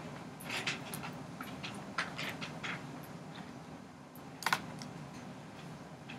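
Wax crayon scratching on paper in short, irregular strokes, hatching stripes onto a drawing, over a faint steady room hum.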